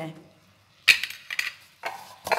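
Cookware clattering: a sharp knock about a second in, then a few lighter knocks.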